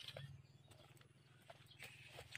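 Near silence: a faint steady low hum with a few soft scattered clicks and rustles.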